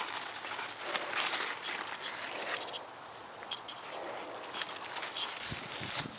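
Rustling of large zucchini leaves as the plants are pushed aside, with irregular swells of rustle and a few light ticks.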